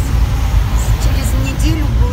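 Steady low rumble of a moving car heard from inside the cabin: engine and tyres running on a wet road. A voice murmurs briefly about one and a half seconds in.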